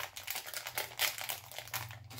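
Plastic packaging crinkling in irregular crackles as it is handled and opened, loudest near the start and again about a second in.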